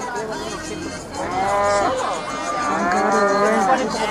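Cattle mooing: two long calls, the first starting about a second in, the second following shortly after the middle.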